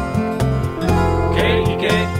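Instrumental passage of a Hawaiian slack-key song: acoustic guitar picking over bass and a steady beat, with a high line sliding between notes about halfway through.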